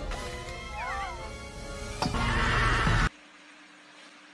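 Soundtrack music with a high cry that glides and wavers over it about a second in, growing louder about two seconds in. The sound cuts off suddenly about three seconds in, leaving only a faint low hum.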